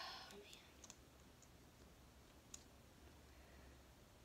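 Near silence with a few faint small clicks, the sharpest about two and a half seconds in, as a liquid concealer tube is opened and its applicator wand drawn out.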